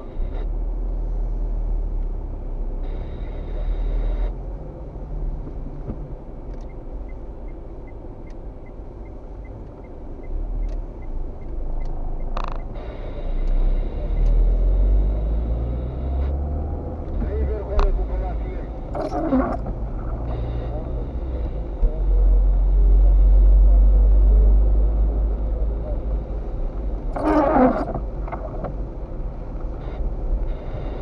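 Car cabin sound while driving on a wet road: a steady low engine and tyre rumble that swells as the car moves off and picks up speed, with a faint, even ticking for a few seconds about a third of the way in and a few short louder sounds in the second half.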